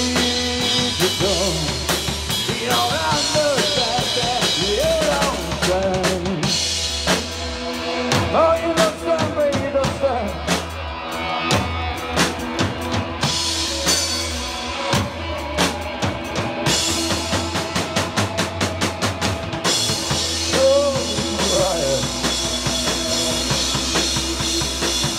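Rock band playing live: drum kit, bass guitar and electric guitar with a bending lead line, in a passage without singing. A fast run of drum hits comes a little past halfway.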